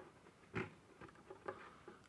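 Faint handling noise of a cut plastic water jar as its two halves are slid about an inch apart by hand: a soft bump about half a second in, then a few light ticks.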